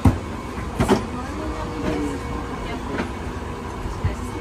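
Footsteps climbing carpeted stairs, a few dull knocks just after the start, about a second in and near the end, over the steady hum of an Airbus A380 cabin, with voices murmuring.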